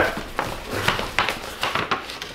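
Paper rustling and crinkling as a manila envelope is handled and opened, in a series of short scrapes.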